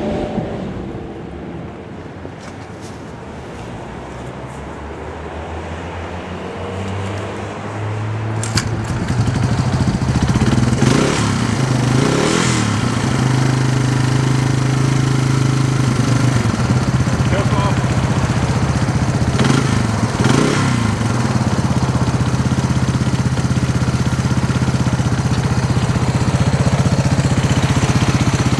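Yamaha 225DR three-wheeler's two-stroke single-cylinder engine, just pull-started cold on choke: the engine note builds up over the first several seconds, then settles into a steady idle. Its throttle is blipped briefly twice near the middle and twice again later.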